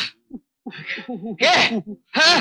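A voice letting out a quick run of short strained cries, then a louder, sharper outburst about one and a half seconds in, as in a struggle.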